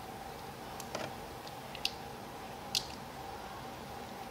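A few light, sharp clicks and ticks from wires and a small plastic connector being handled against a hard plastic RC truck body shell, spaced irregularly over a faint steady hum.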